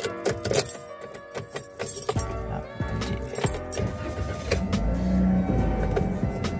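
Keys jangling at the ignition of a Daihatsu Sigra 1.2, then about two seconds in its engine starts and settles into a steady low idle. Background music plays throughout.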